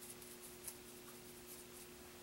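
Faint, soft scratching of a paintbrush working paint onto a painted figure, several light strokes in quick succession, over a low steady hum.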